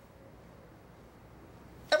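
Quiet room tone, a faint steady hiss, in a pause in the conversation; a man's voice starts again right at the end.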